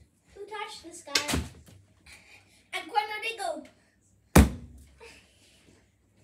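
Children's voices, then one sharp, loud thud about four and a half seconds in, followed by a short echo.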